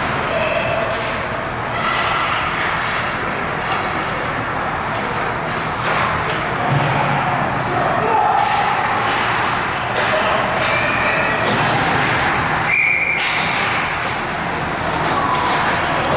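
Ice hockey game sounds in an indoor rink: a steady hiss of skates on the ice, with short shouts from players and onlookers and a few sharp knocks of sticks or the puck.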